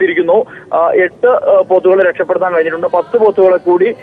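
Speech only: a man talking continuously, with the thin, narrow sound of a phone line.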